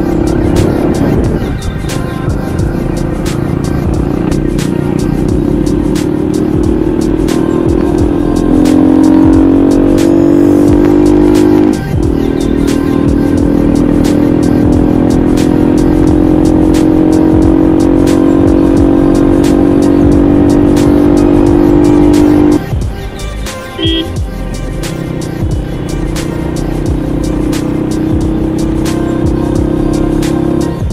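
Small motorcycle engine running under way, its pitch climbing slowly as the bike picks up speed, then dropping off suddenly about two-thirds of the way through as the throttle eases, and picking up again near the end. Background music plays with it.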